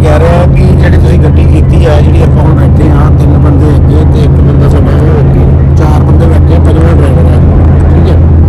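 Steady low drone of a moving car heard from inside its cabin: engine and road noise.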